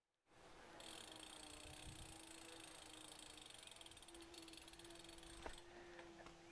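Faint sound of a BMX bicycle rolling on a paved driveway, its freewheel ticking as it coasts, over a faint steady hum. A single sharp click comes near the end.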